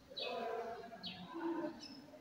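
Marker pen squeaking and scratching across paper as a word is handwritten, in a few short strokes with wavering squeaky tones.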